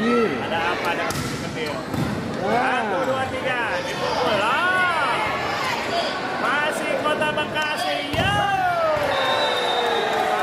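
Volleyball rally in an echoing sports hall: a few sharp smacks of hands striking the ball, over pitched shouts that rise and fall from players and spectators.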